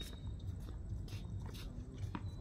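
Tennis ball bounced twice on an outdoor hard court, two short knocks about a third of a second apart over a steady low rumble.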